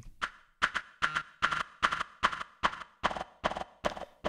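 A Phase Plant sampler patch playing a hi-hat sample retriggered at random start points and lengths: short glitchy ticks at about four or five a second, unevenly spaced. They run through distortion, compression, delay and reverb, and a resonant high-Q filter, swept slowly by an LFO, gives them a sweeping, hollow colour.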